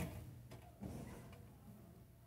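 A sharp knock, then a softer knock with a rustle just under a second later, from a book being handled at a wooden pulpit close to its microphone.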